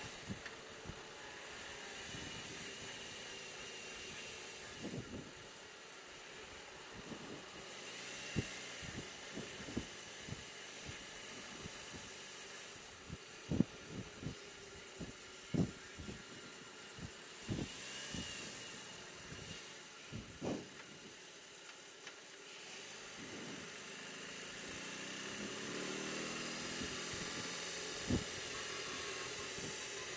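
BMW R18 Transcontinental's boxer-twin engine running under way, heard faintly with road and wind noise and a thin whine. A scatter of short thumps comes through the middle. Near the end the engine note rises as the bike accelerates.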